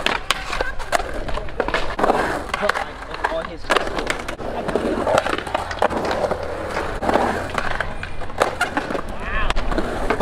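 Skateboard rolling on concrete and grinding along a metal rail, with repeated sharp clacks of the board and wheels hitting the ledge and ground.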